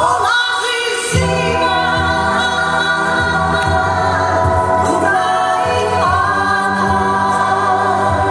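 A live pop-folk vocal group sings a slow song in close harmony, led by a woman's voice, holding long notes over a band accompaniment. The bass drops out briefly at the start and comes back about a second in.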